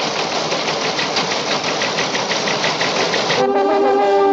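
Loud, rapidly pulsing noise effect, about six even pulses a second, that cuts off suddenly about three and a half seconds in as held music tones begin.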